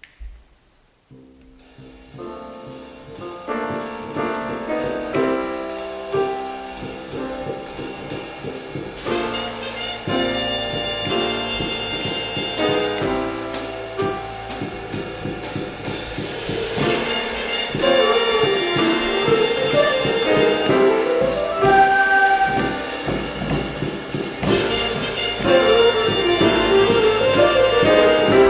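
Jazz big band playing: the music enters softly about a second in with piano and rhythm section and builds steadily louder as the full ensemble of flutes, clarinets, saxophones and brass joins, with rising-and-falling runs in the middle and near the end.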